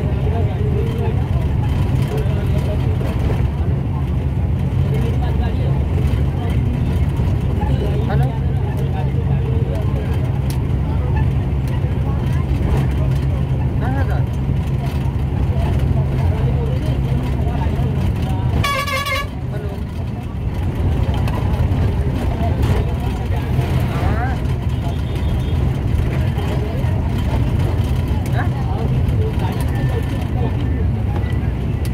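Steady low rumble of a moving road vehicle's engine and tyres, heard from inside the vehicle. About two-thirds of the way through, a horn toots once, briefly.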